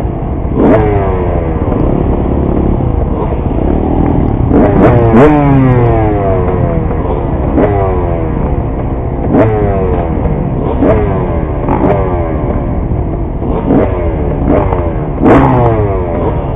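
A towing vehicle's engine runs steadily under load while a steel drag harrow is pulled over loose dirt. Sharp metallic clanks and rattles come from the drag every second or two.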